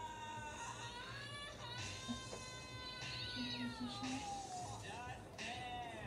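A child's long, high-pitched wail, drawn out over several seconds in a couple of sustained stretches, sinking in pitch near the end.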